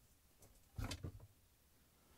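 Dishwasher wash impeller pulled off its shaft with pliers: a brief cluster of plastic clicks and scrapes about a second in, otherwise near silence.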